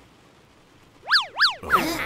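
Cartoon sound effect: about a second in, two quick whistle-like pitch sweeps, each rising and falling, then a falling glide.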